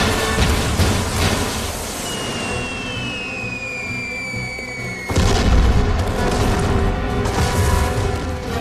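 Cartoon rocket salvo under the film score: launch whooshes, then several falling whistles from about two seconds in, ending in a sudden loud explosion boom about five seconds in.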